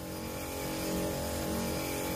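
A motorized sprayer's pump running with a steady hum while disinfectant mist hisses from the spray wand's nozzle.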